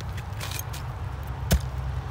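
A long-handled digging tool working wet, root-filled soil, with one sharp knock about one and a half seconds in and faint scraping clicks, over a steady low rumble.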